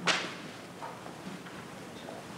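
A single sudden sharp noise right at the start, trailing off within about half a second, then quiet room tone with a few faint small sounds.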